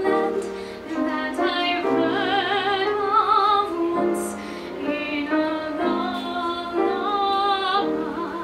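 A woman singing a show tune into a microphone, holding some notes with vibrato, accompanied by piano.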